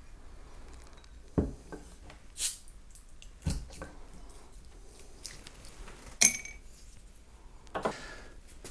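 A capped glass beer bottle being opened with a bottle opener: several small clicks and knocks of handling, a sharp snap about six seconds in as the cap comes off, and a knock near the end as the bottle is set down on the wooden table.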